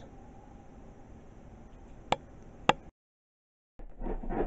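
Faint room noise with two short, sharp clicks about half a second apart, a little past the middle; then the sound cuts out completely for about a second at an edit.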